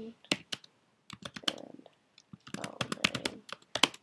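Typing on a computer keyboard: a run of irregular key clicks, some coming in quick clusters.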